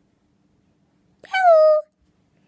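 A woman's high-pitched puppet voice giving one short wordless call about a second in, falling slightly in pitch.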